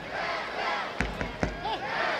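Football match sound from a near-empty stadium: players and a few spectators shouting, with two sharp thuds of the ball being kicked about a second in, close together.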